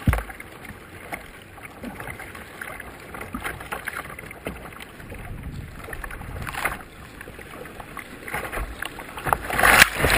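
Rough river water rushing and slapping against the bow of a kayak running through rapids, with a louder splash about two-thirds of the way in. Near the end a wave breaks over the bow and washes across the camera.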